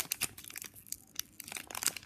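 Foil booster-pack wrapper crinkling in the hands as it is pulled and twisted to open it, a run of irregular small crackles; the pack is hard to get open.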